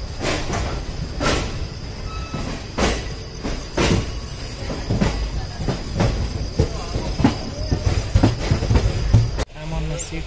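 Inside a railway passenger coach: a low rumble with irregular clunks and knocks from the train, and voices in the background. It cuts off suddenly just before the end.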